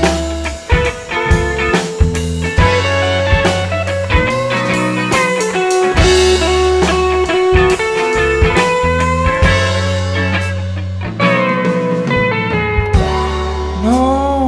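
A rock band playing an instrumental passage live: Telecaster-style electric guitars, one playing a lead line with sliding, bent notes, over a sustained bass guitar and a drum kit keeping a steady beat.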